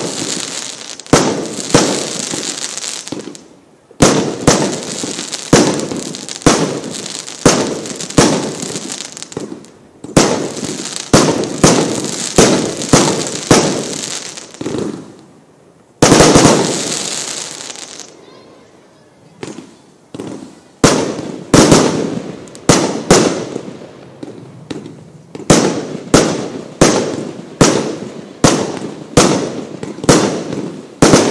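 Worlds Toughest Fireworks 'Show combination B' firework cake firing shot after shot, about two sharp bangs a second, each followed by a fading crackle as the stars burn out. The volleys pause briefly now and then, with a longer lull just past the middle.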